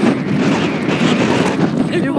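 Wind buffeting a phone's microphone: a loud, steady rough rushing noise.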